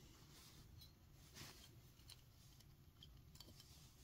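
Near silence, with a few faint, short clicks as a 1/64 diecast car is pried apart: its plastic interior coming free of the metal body.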